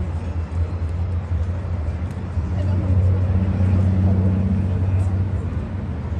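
A steady low hum that grows louder in the middle, with faint background voices beneath it.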